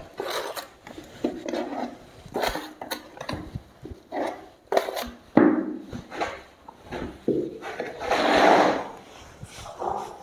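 Steel smoothing trowel scraping and knocking against a plastic bucket as gypsum plaster is scooped onto it, in a run of short, irregular scrapes. There is a longer, louder scrape near the end.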